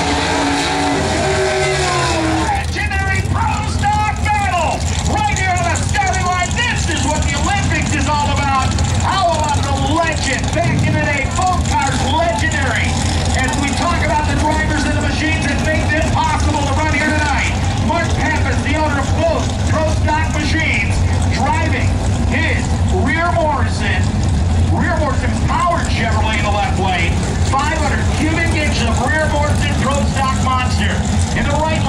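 Nostalgia Pro Stock drag car's V8 engine, held at a steady raised speed for about the first two seconds right after its burnout, then running at a low idle. People's voices go on over it throughout.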